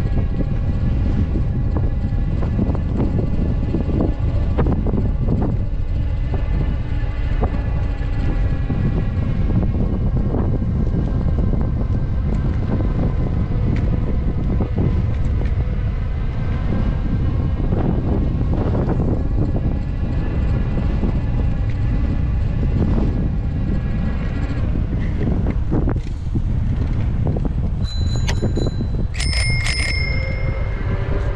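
Wind buffeting an action camera's microphone while cycling, heard as a steady low rumble with a faint steady whine. Near the end a bicycle bell is rung twice.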